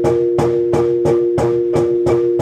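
South African marimbas played with mallets in a quick repeating pattern, about three strikes a second, with low bass notes underneath.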